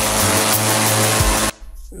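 Hot-air balloon inflator fan running loud and steady, all but drowning out a music track under it; the sound cuts off abruptly about one and a half seconds in.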